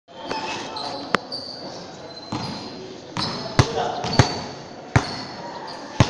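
A basketball being dribbled on a hard court floor close by: four sharp thuds, the last three about two-thirds of a second apart, with voices in the background.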